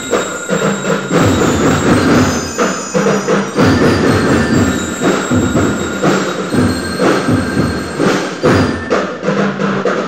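A school marching band playing loudly: drums beat a steady marching rhythm under bell-like metallic tones.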